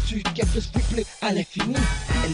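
Hip-hop track: rapping over a beat with a heavy bass drum.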